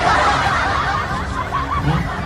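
A man chuckling softly under his breath after a taunt, breathy laughter without words.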